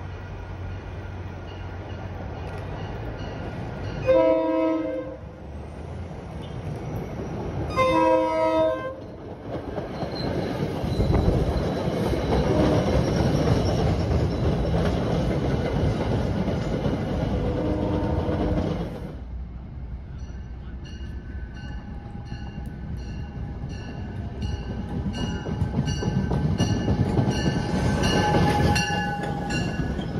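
MBTA commuter rail train sounding its horn in two blasts about four seconds apart as it approaches, then passing close by with loud wheel and rail noise. After a cut, a second commuter train passes, with a high ringing beat repeating about three times every two seconds.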